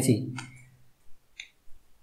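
A few faint, separate clicks in near quiet, after a man's voice trails off at the start.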